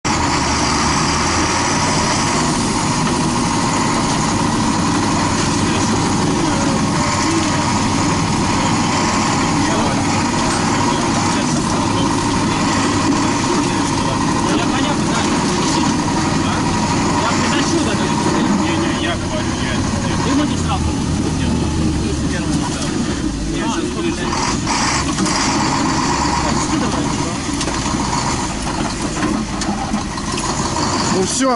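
Fire engine driving, its engine and road noise loud and steady inside the crew cab, with a few knocks and rattles in the second half.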